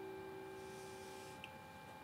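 Acoustic guitar's last plucked notes ringing out and fading away, with a small click near the end.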